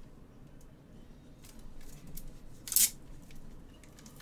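Trading cards in hard plastic holders being handled: a few small clicks and one short, sharp scrape about three quarters of the way through.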